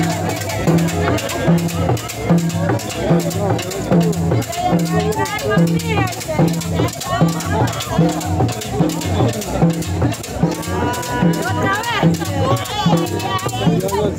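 Live dance music from a band with a drum kit, a steady repeating bass line under it, and crowd voices mixed in.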